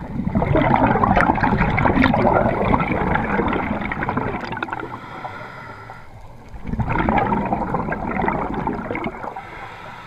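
Scuba diver's exhaled air bubbling out of a regulator underwater, heard as two long breaths out, the second beginning about two-thirds of the way through.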